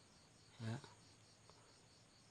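Faint, evenly pulsing insect chirping in the background, high-pitched and steady, over otherwise near silence; one short spoken word is heard just after half a second in.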